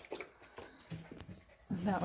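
Mountain Blue Doodle puppies lapping water, making irregular wet clicks that come a few at a time.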